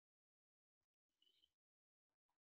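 Near silence, with one faint, brief sound a little over a second in.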